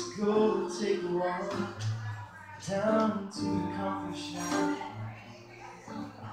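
A live acoustic song: strummed acoustic guitar chords ringing, with a sung vocal line.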